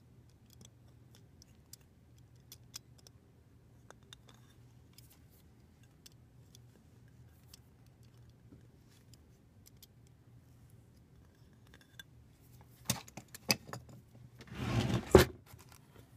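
Faint scattered clicks and scrapes of a craft blade cutting black electrical tape on an aluminium plate. Near the end come a few sharp clicks and then a louder, scratchy rustle lasting under a second as the tape is handled.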